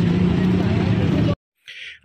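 Street traffic noise with a steady engine hum, cutting off abruptly about one and a half seconds in.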